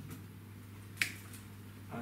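A single sharp click about a second in: the power switch of a rotating laser level being pressed to switch it on.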